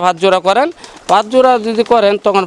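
Domestic pigeons cooing in their loft, under a man's speech.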